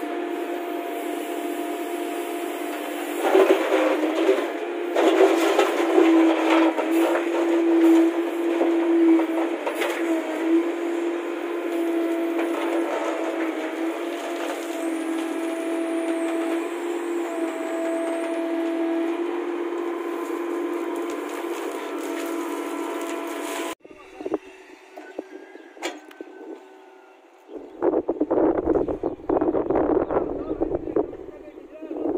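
JCB 3CX backhoe loader running with a steady droning hum as its bucket digs a pit in stony soil, with scraping and knocks of earth and stones about 3 to 10 seconds in. The drone stops abruptly about 24 seconds in, and wind rumbles on the microphone near the end.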